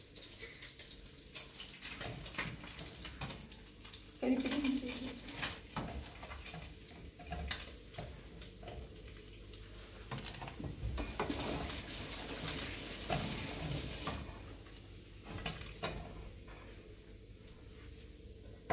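Cooking sounds at a stove: a metal utensil clicking and scraping in a frying pan as fried pieces are lifted onto a plate, over a steady hiss that grows louder for a few seconds past the middle.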